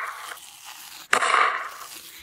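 Close-miked ASMR eating: loud crunching bites into a crunchy food, one dying away in the first moment and another about a second in.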